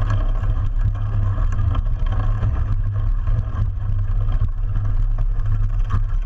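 Mountain bike rolling fast over a dirt trail, heard from a camera mounted low on the bike near the wheel: a loud, steady low rumble of tyre and frame vibration, with scattered knocks from bumps.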